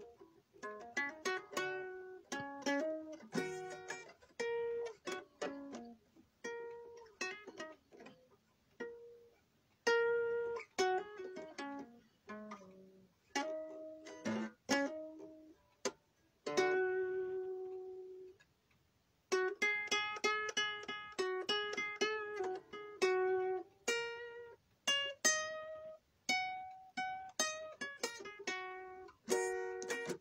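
Guitar being picked, a run of single plucked notes that start sharply and ring away. A little past halfway one note is left to ring out into a brief pause, then the picking starts again.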